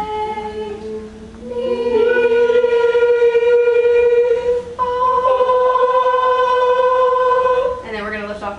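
A class of students singing long held notes together in unison: a short note, then two long notes on one slightly higher pitch, the second beginning about five seconds in.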